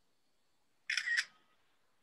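A short, sharp double click, two strokes about a third of a second apart, about a second in, like a camera shutter.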